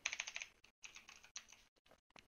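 Faint typing on a computer keyboard: a quick run of keystrokes at the start, then a few scattered key presses.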